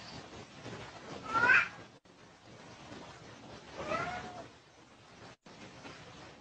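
Domestic cat meowing twice, two drawn-out calls about two and a half seconds apart, the first louder.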